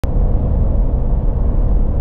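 Road noise inside the cab of a Ford F-150 PowerBoost pickup at highway speed: a steady low rumble.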